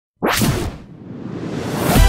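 Intro sound effect: a sudden whoosh about a quarter second in that fades quickly, then a swell rising steadily in loudness, leading into music.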